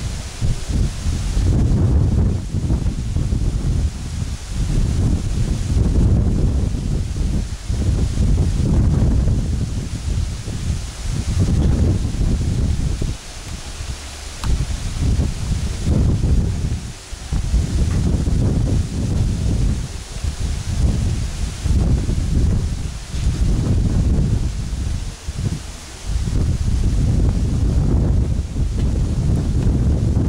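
Strong wind buffeting the microphone: a loud, gusty low rumble that swells and dips every second or two, with a few brief lulls.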